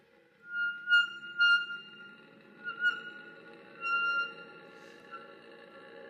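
Flute and bass clarinet duo entering together after a silence: the bass clarinet holds a low sustained tone while the flute plays a high held note that swells into four loud accents.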